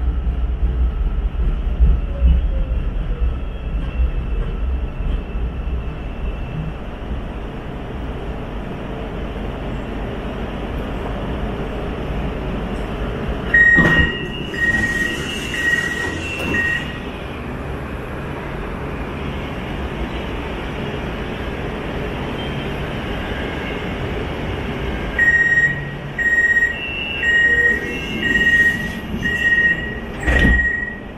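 Hyundai Rotem metro train coming to a stop at a platform, its low rumble dying away, then standing with a quiet hum. About halfway through, a click and a run of evenly pulsed two-tone door chimes as the doors open; a second, longer run of the same beeps in the last five seconds warns that the doors are about to close.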